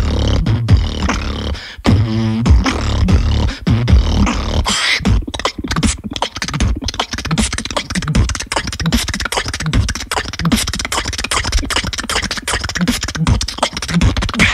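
Human beatboxing: deep bass kicks and a wavering pitched buzz in the first few seconds, then a fast, dense run of sharp snare and hi-hat clicks.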